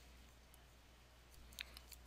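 Near silence with a low room hum, and a few faint clicks near the end from a stylus tapping a drawing tablet.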